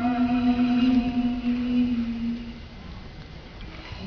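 A guqin note ending its downward slide and ringing on one pitch, fading away about two and a half seconds in.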